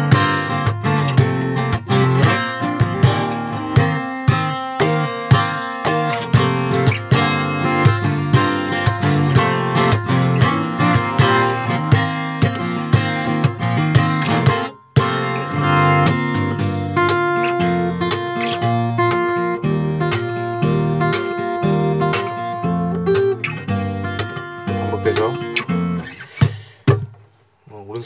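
Steel-string cutaway acoustic guitar, tuned C G D G A D, played fingerstyle as a fast rhythmic accompaniment with percussive right-hand palm-attack strokes near the bridge. It breaks off briefly about halfway, resumes, and dies away near the end.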